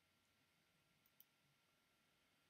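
Near silence, with one faint click a little over a second in.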